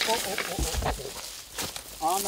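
Crackling and scraping of a horse-drawn plough cutting through dry, stony vineyard soil, with a faint voice at the start and a dull thump a little before the middle.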